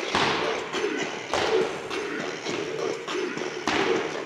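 Background music with three loud, sharp thumps: one at the start, one about a second later, and one near the end.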